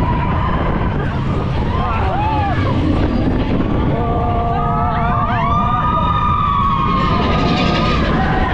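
Big Thunder Mountain Railroad mine-train roller coaster running fast along its track with a steady, loud low rumble. Riders scream and whoop over it, with long held screams from about halfway through.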